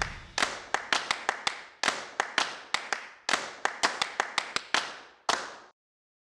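A quick run of about twenty sharp clap-like hits, each ringing out briefly, unevenly spaced, stopping suddenly about five and a half seconds in.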